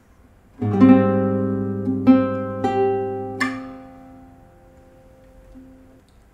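Nylon-string classical guitar played fingerstyle: a chord sounds about half a second in, followed by three more plucked chords or notes over the next three seconds, then the last notes are left to ring and fade away.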